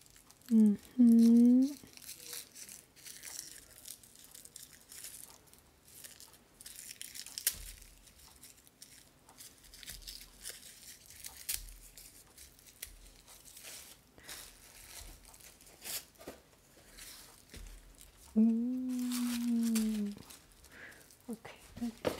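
Tissue paper rustling and crinkling with scattered crackles and light tearing as it is peeled off a sandal's rhinestone straps. A woman's short wordless vocal sound comes about a second in, and a longer one of about two seconds near the end; these are the loudest moments.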